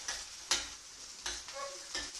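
Trout fillets sizzling steadily as they sear skin-side down in a skillet, while a spoon stirs cauliflower in a pan, scraping or knocking against it twice.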